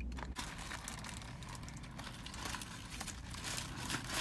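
A person chewing a mouthful of burger: faint, irregular wet clicks and smacks of the mouth.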